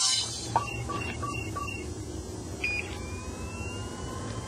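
Electronic beeps from a sci-fi film soundtrack: about four short, evenly spaced beeps in the first two seconds, a higher two-note beep a little before the three-second mark, then a faint, slowly rising tone, all over a steady low hum.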